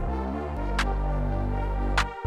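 Electronic music played live on a synthesizer keyboard: a deep synth bass moving between notes under sustained synth chords, with a short noisy drum hit about a second in and another near the end.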